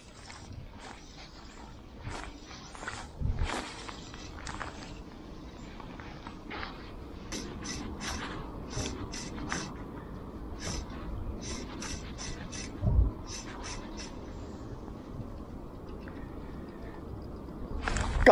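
Wind buffeting the microphone, with a run of short, sharp scrapes, about two a second through the middle, as fly line is stripped back by hand through the rod rings. A single low thump comes later.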